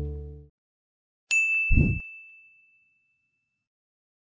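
The tail of a jingle fades out in the first half second. Then, over a second in, a single bright ding sounds with a short low thud under it, its high tone ringing and fading over about two seconds: an end-card logo sound effect.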